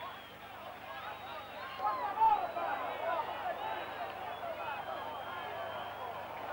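Football stadium crowd, a mass of overlapping shouting voices that swells about two seconds in, heard on a muffled old TV broadcast recording.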